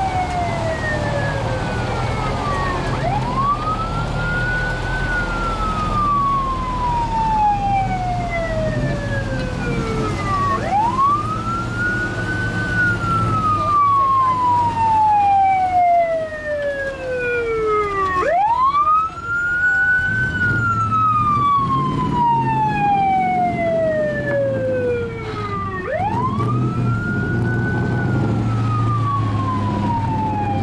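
A siren wails up and down again and again: each cycle climbs quickly in pitch, then sinks slowly. A new cycle starts about every seven to eight seconds, four times in all. Underneath, the engines of a column of passing military trucks run at low speed.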